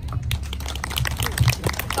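Scattered handclaps from a small audience, irregular sharp claps over a steady low hum.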